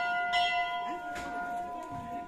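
A temple bell struck twice in quick succession, its several clear tones ringing on and slowly fading.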